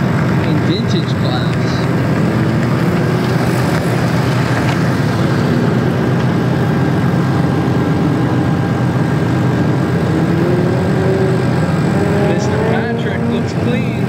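Sports car engine on a timed autocross run, revving up and down through the course, with the revs climbing in several rising sweeps in the last few seconds.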